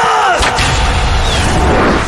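A man's shouted order to shoot, falling in pitch, then about half a second in a sharp crack and a loud, dense rush of noise over a low rumble: the sound effect of a volley of crossbow bolts being loosed.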